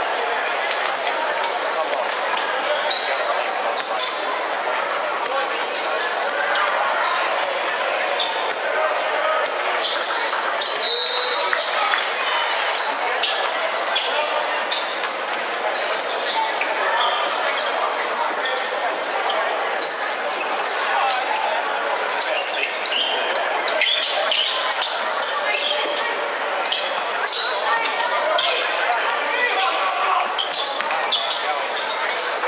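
Indoor basketball game: a basketball bouncing on a hardwood court amid a steady mix of players' and spectators' voices, all echoing in a large hall.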